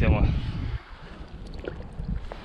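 Wind buffeting the microphone as a fluctuating low rumble, strongest in the first second and then easing off.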